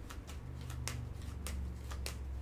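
Faint handling of tarot cards: a few soft clicks and flicks spread through the two seconds, over a low steady hum.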